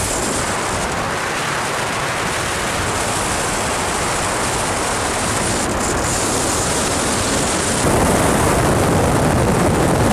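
Wind rushing over a camera microphone held out of a moving car's window, mixed with tyre and road noise. It gets louder and fuller about eight seconds in.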